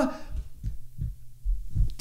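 Handling noise from a dynamic microphone on a boom arm being gripped and moved by hand: a few dull, low bumps over about two seconds.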